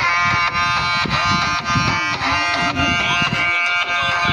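Folk music: a loud reedy wind instrument holding one long steady note over an irregular drum beat.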